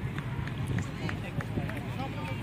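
Indistinct voices of players and spectators around an outdoor kabaddi ground, over a steady low outdoor rumble, with a string of short light ticks about three a second.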